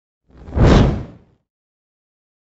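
A single whoosh sound effect, swelling up and dying away within about a second, for a logo intro.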